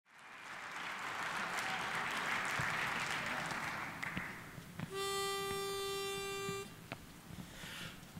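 A pitch pipe sounding one steady note for about a second and a half, giving a barbershop quartet its starting pitch. Before it, a steady rush of noise fills the first four seconds.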